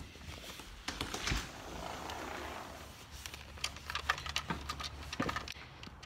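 Handling noise from a phone being carried: its microphone brushing and rubbing against a leather jacket, with scattered clicks and knocks.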